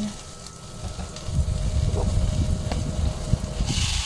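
A low rumble with a few light clicks, then frying sizzle starting up near the end as marinated chicken pieces are tipped into the hot nonstick pan with the sautéed onion, garlic and ginger.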